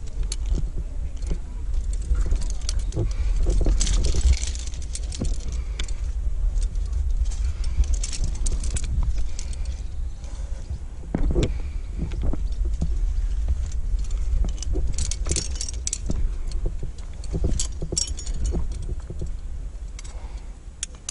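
Metal climbing gear (carabiners, quickdraws and the rack on a climber's harness) jangling and clinking as he moves and clips the rope, in scattered bursts over a steady low rumble.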